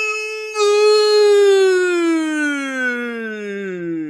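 A man's voice holding one long, loud note, broken briefly about half a second in, then sliding slowly down in pitch.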